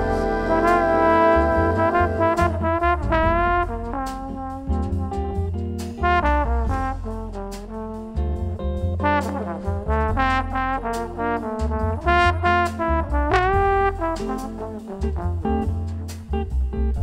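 Big-band jazz instrumental passage: the brass section, trumpets and trombones, plays phrases with pitch bends and scoops over bass and drums.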